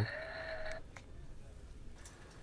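Sound effect from a boxed 50-inch light-up Halloween skull prop, set off by its 'Try Me' button and played through a small speaker: one drawn-out, slightly rising voice-like tone that cuts off a little under a second in. A faint click follows.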